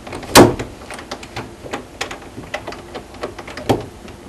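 Irregular light clicks and knocks, with a sharp, louder knock about half a second in and another near the end.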